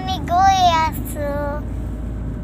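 A young girl singing two drawn-out, wavering notes, over the steady low rumble of a car heard from inside the cabin.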